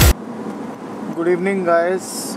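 Background music cuts off just after the start, leaving the steady road and engine noise inside a moving Mahindra XUV500's cabin. A voice starts up about a second in.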